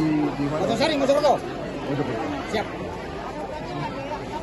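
Indistinct men's voices talking close by, loudest in the first second and a half, over the chatter of a surrounding crowd.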